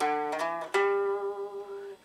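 Guitar playing single picked notes of a blues lick: two quick notes, then a final note held and left to ring, slowly fading.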